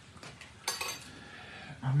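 A utensil clinks and scrapes briefly against a cooking pot a little under a second in, with a few faint clicks before it.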